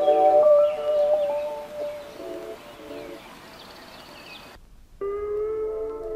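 Mellow lo-fi hip hop music with slow, sustained notes fades down and stops abruptly about four and a half seconds in. After a half-second gap, new music begins with held, stacked notes.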